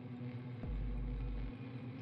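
Low, sustained ambient drone of background music, with a deep bass tone that comes in for about a second in the middle.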